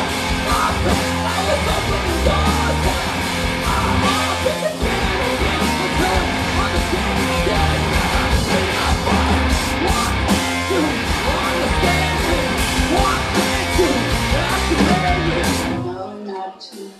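Noise-punk duo playing live: distorted electric guitar and a drum kit with yelled vocals, loud and dense, cutting off abruptly at the very end.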